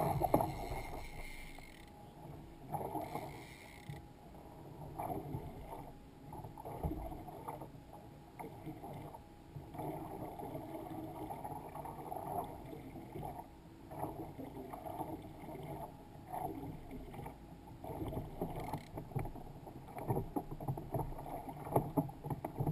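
Small waves lapping and sloshing against a fishing kayak's hull in an irregular, surging rhythm, with a few sharper knocks, the loudest at the start and near the end.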